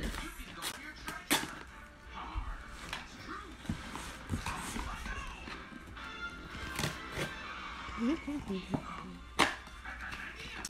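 A cardboard shipping box being opened by hand: irregular rustling and tearing of cardboard and packaging, with sharp snaps and clicks, the loudest about a second in and near the end. Faint voices and music play in the background.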